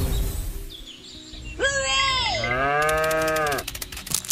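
A cow mooing: one long moo starting about a second and a half in and lasting about two seconds, its pitch dropping at first and then holding steady. Music fades out before it.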